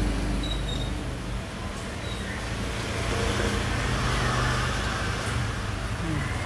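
A steady low rumble of background noise.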